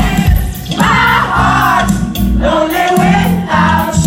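Live pop-rock band playing loudly: electric guitar, bass and drums, with several voices singing together.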